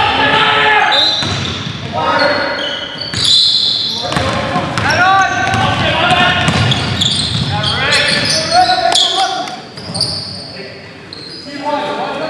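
Live indoor basketball game in an echoing gym: a basketball bouncing on the hardwood court, sneakers squeaking, and players shouting to each other, quieter for a moment near the end.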